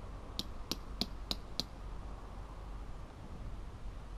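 A tent peg being driven into the ground: five sharp, evenly spaced taps, about three a second, in the first half, then they stop.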